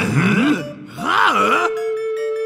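A cartoon character's wordless angry grumbling and groaning, in two wavering outbursts. Near the end the voice stops and music with a held tone and mallet-percussion notes begins.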